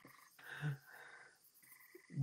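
Mostly quiet room tone, with a faint, short murmur of a voice about half a second in.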